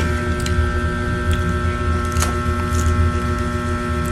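A steady electrical hum with several constant tones, under a few faint clicks and smacks of someone chewing a bite of air-fried chicken.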